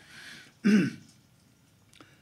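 A soft breathy exhalation, then a single short, loud throat-clearing cough about two-thirds of a second in.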